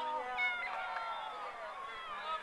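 Several men shouting at once, with drawn-out overlapping calls: footballers calling to one another during play.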